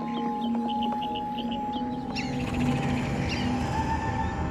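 Background music score of long held notes, with quick little chirps in the first second and a few higher gliding chirps about halfway through, like forest creature sound effects.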